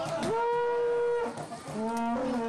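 A conch-shell trumpet (horagai) blown in long held notes: one note scoops up and holds for about a second, and a second begins near the end.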